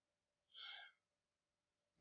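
Near silence, with one faint, short breath drawn in about half a second in.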